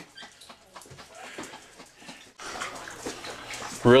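A dog whimpering, faint at first and louder from about two and a half seconds in.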